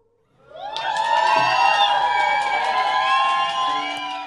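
Concert audience cheering and whooping: many voices swell up about half a second in and hold.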